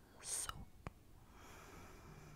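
Close whispering into a microphone: a loud breathy hiss a fraction of a second in, a single sharp click of long acrylic nails just before the one-second mark, then soft whispering.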